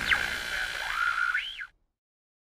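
Radio static as a sound effect: a steady hiss and whine with warbling squeals, the last one rising and falling, cutting off abruptly near the end. It is the unanswered radio call.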